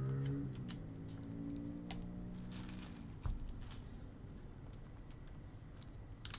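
Scattered faint clicks of mechanical keyboard switches being handled and pressed on a 40% keyboard, with one sharper click about two seconds in.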